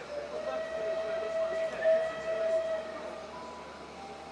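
Steam whistle of the Merchant Navy class locomotive 35028 Clan Line, one long steady blast lasting about three and a half seconds.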